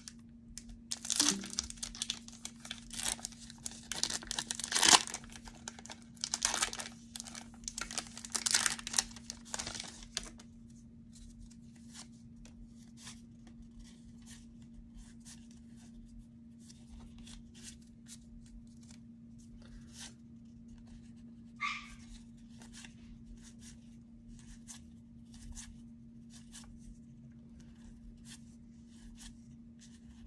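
Foil Pokémon booster pack being torn open and crinkled in the hands, in loud crackling bursts for about the first ten seconds. After that, only faint soft clicks of trading cards being slid and flipped one by one.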